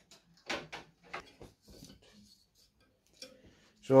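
A few short plastic clicks and knocks as a 120 mm case fan is pulled out of a PC case and handled. The clicks come close together in the first couple of seconds, then one more after a short pause.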